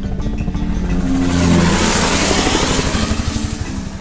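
Helicopter of the crop-spraying kind flying past, its rotor chop and engine noise swelling to a peak about two seconds in and then easing off. Background music runs underneath.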